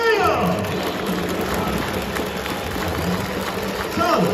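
Ballpark crowd noise with scattered clapping in the gap between stadium PA announcements. A drawn-out, echoing announcer's voice trails off in the first half second, and the next call begins at the very end.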